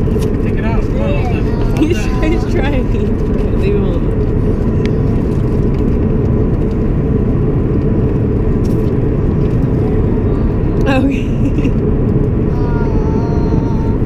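Steady low rumble of road and engine noise inside a moving car's cabin, with faint voices now and then.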